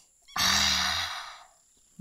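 A woman's long, breathy sigh out, partly voiced, lasting about a second and fading away: a relaxed exhale while settling into a stretch.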